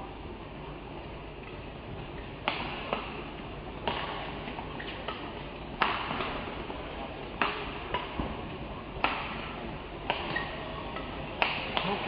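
Badminton rackets striking a shuttlecock back and forth, a sharp hit roughly every one and a half seconds over a steady background hum of the hall.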